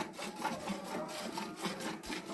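Hand-milking a cow into a stainless steel bucket: repeated rasping squirts of milk streaming from the teats into the milk already in the pail.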